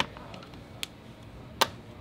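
A plastic trim pick clicking against a car door's handle trim as it is worked in to release it. There are three sharp clicks, the loudest about a second and a half in.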